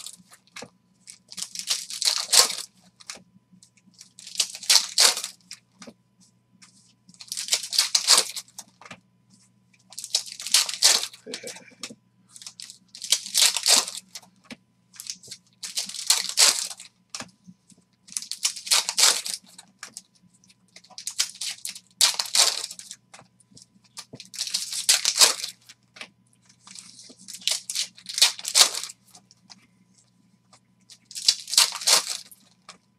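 Foil trading-card packs being torn open and their wrappers crinkled, one after another: a short crackling tear about every three seconds.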